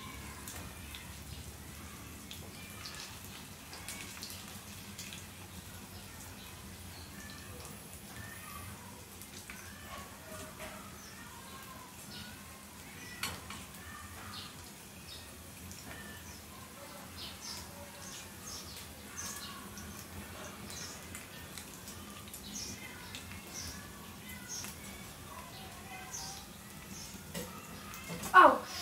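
Dumplings frying in oil in a small pan: a faint sizzle with scattered small spitting pops, and one sharper click about halfway through.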